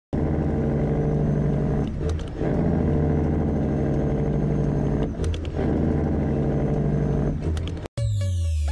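Big truck engine running at a steady speed, its sound dipping briefly three times, each dip with a click.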